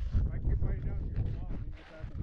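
Wind buffeting a helmet camera's microphone, a steady low rumble, with faint voices of people talking under it.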